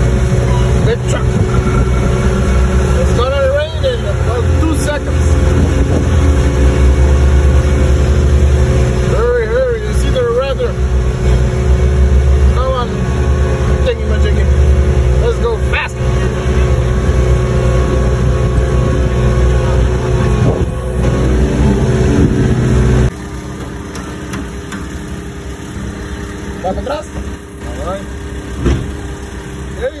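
Skid steer engine running steadily under throttle as the machine is driven. About three-quarters of the way through, the sound drops abruptly to a much quieter, lower hum.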